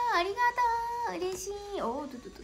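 A young woman's voice singing a short melodic phrase: a held note for about a second that slides down to a lower held note, with a final swoop down near the end.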